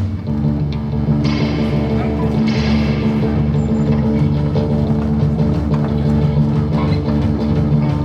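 A live rock band playing on electric guitars and drums.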